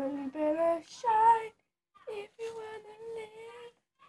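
A girl singing unaccompanied without words. Short notes step up in pitch, then comes a loud high note about a second in, and after a brief pause one long held note.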